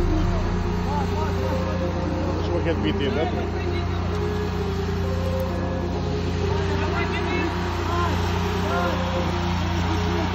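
Fire engine's motor running steadily at a constant pitch, with indistinct voices over it.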